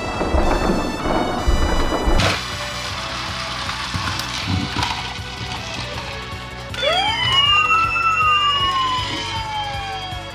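A toy police motorcycle rumbles as it rolls down a wooden ramp for the first two seconds, then about seven seconds in its electronic siren starts, wailing with pitch rising and falling, over background music.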